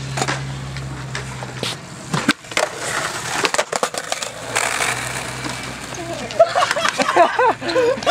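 Skateboard rolling on concrete, with sharp clacks of the board a couple of seconds in. Laughter comes near the end.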